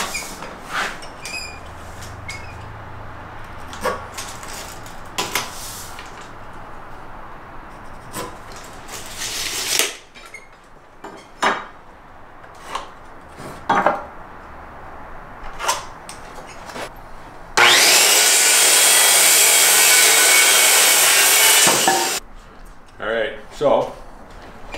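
Tape measure and pencil clicking and 2x4 lumber being handled, then about three-quarters of the way in a circular saw cuts through a board for about four seconds, starting and stopping abruptly. The cut is the loudest sound.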